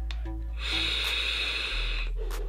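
Air drawn through the airflow of a vape tank on a Wake Mod Co. Bigfoot 200W mod during an inhale: a steady, smooth hiss that starts about half a second in.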